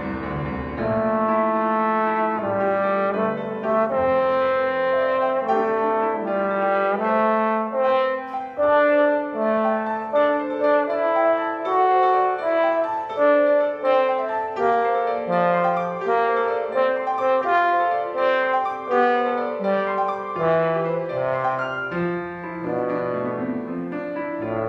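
Trombone playing a melody of held notes that change pitch every half second or so, with grand piano accompanying.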